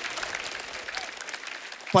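Studio audience applauding after a punchline, the clapping dying away over the two seconds.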